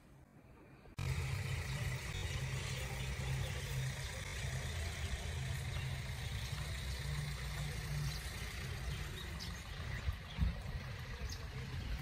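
A vehicle engine idling steadily, coming in suddenly about a second in, with a low, even hum.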